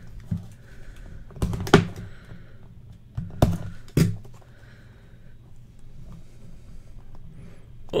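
Hands handling a small sealed trading-card box: a few sharp knocks and taps as it is turned and pried at, with faint rubbing between. The box is stuck shut because its seal tape was not fully cut.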